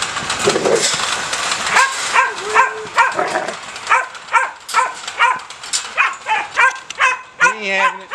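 A young protection-bred puppy barking aggressively at a man beside its wire kennel, short sharp barks repeating about three times a second. A rough noise comes before the barking starts, about a second and a half in.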